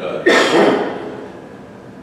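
One sudden, loud, explosive burst from a person's throat, like a cough, lasting about half a second.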